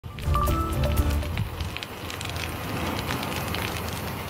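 A short musical transition sting with a deep bass hit. About a second and a half in it gives way to dense crackling: a road grader scraping crushed Mormon crickets off the asphalt.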